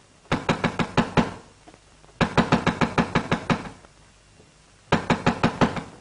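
Rapid knocking on a door in three bursts of quick blows, about a second each, with short pauses between.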